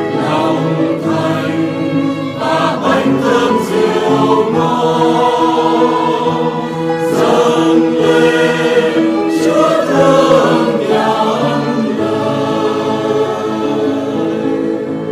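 A choir singing a Vietnamese Catholic hymn in parts, with long held notes near the end.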